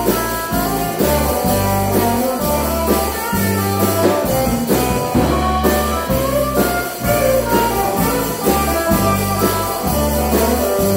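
Live band playing an instrumental passage: electric guitars and drum kit over low held bass notes that change about once a second.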